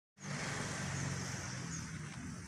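A steady low engine hum, like a motor vehicle running nearby, over a wash of outdoor noise.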